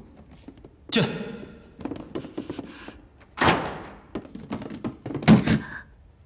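A wooden door knocking and banging in a small room: a sharp knock with a ringing tail about a second in, a louder bang a little past the middle, then a couple of heavy dull thumps near the end.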